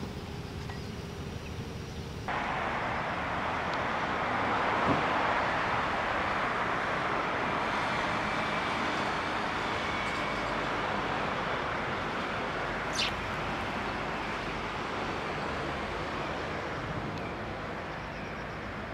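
Steady outdoor background noise, an even hiss with no clear tone, that steps up about two seconds in and swells a little around five seconds. One short, sharp high click or chirp comes about thirteen seconds in.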